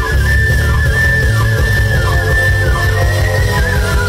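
Moog synthesizer solo: a high single lead line, mostly held notes with small pitch bends, over a heavy bass line and the band.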